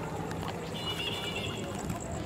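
Steady background noise of an outdoor city square at night, with a faint high-pitched tone lasting about a second in the middle.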